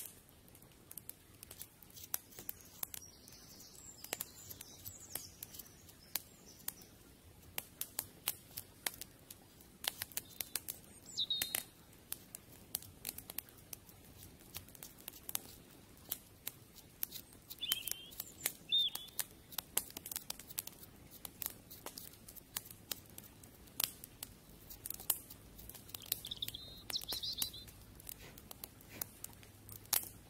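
Wood fire crackling with many sharp, irregular pops and clicks, and a few short bird chirps now and then.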